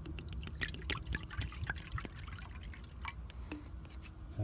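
Water being poured out of a canteen into a metal mess-kit pot, with quick irregular splashes and drips that thin out near the end.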